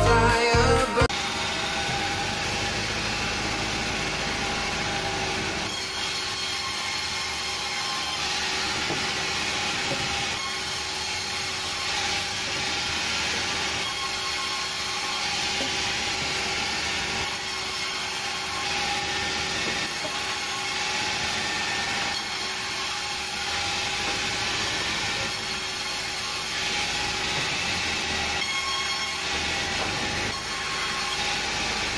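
Pop music cuts off about a second in. Then a sawmill's vertical band saw runs steadily with a held whine, sawing logs into planks.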